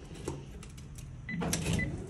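A key clicking in the keyhole of an apartment building's entrance intercom panel, followed near the end by two short high electronic beeps as the panel accepts the key and releases the entrance lock.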